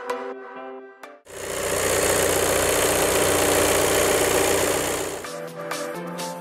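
A 2016 Volkswagen Passat's engine running loudly for about four seconds with a dense, rapid pulsing, cutting in about a second in and fading out near the end, between stretches of electronic background music.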